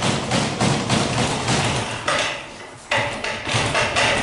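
Boxing gloves smacking against padded focus mitts in quick combinations of punches, with a short pause a little past halfway before the punches resume.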